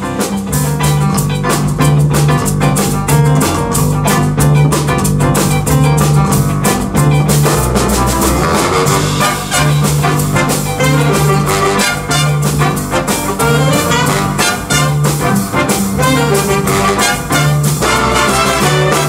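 A big band playing jazz live at full volume, trumpets and saxophones together over drum kit and piano.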